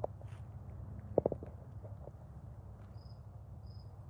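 Steady low rumble with a quick cluster of three sharp clicks about a second in, then three short, high, evenly spaced chirps near the end, typical of a cricket.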